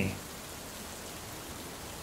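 Steady, even hiss with no distinct events, at a low level.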